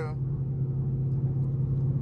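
Dodge Charger Scat Pack's Hemi V8 droning steadily at highway cruise around 80 mph, heard from inside the cabin with road noise underneath.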